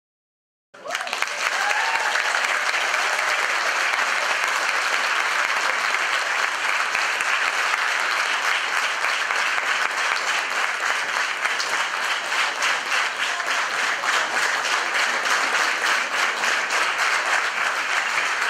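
Large audience applauding after an orchestral concert, the clapping starting abruptly about a second in and then holding steady and dense.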